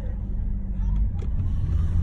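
Steady low road and engine rumble inside a moving car's cabin, with a faint click about a second in.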